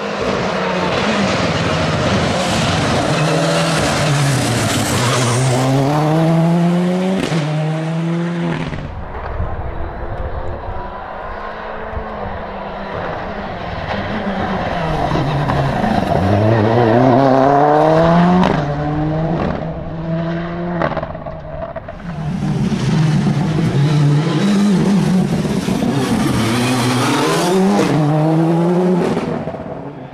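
Škoda Fabia rally car driven hard at full race speed, its engine note climbing steeply through the gears and dropping back at each shift and lift, over several passes.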